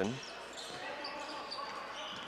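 A basketball being dribbled on a hardwood gym floor, heard faintly over the steady background noise of a large hall.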